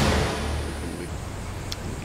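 The intro theme ends on a hit, then a low rumbling noise tail dies away over about two seconds.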